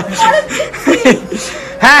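Light chuckling mixed with a few words of conversation, then a voice saying "haan" (yes) near the end.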